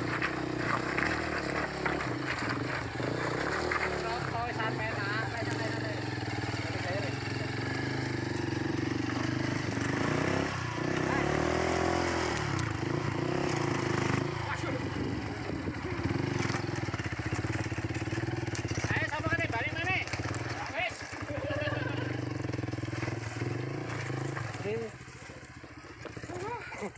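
Honda CRF trail bike's single-cylinder four-stroke engine running and revving as the bike is worked over loose volcanic rocks, with people's voices. The engine sound drops away near the end.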